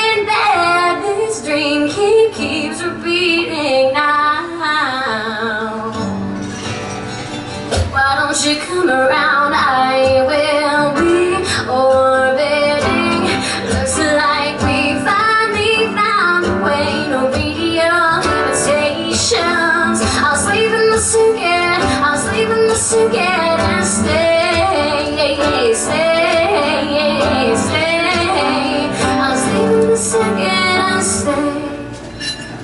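A woman singing a pop song while strumming an acoustic-electric guitar. The accompaniment eases off briefly, then comes back louder and fuller from about eight seconds in.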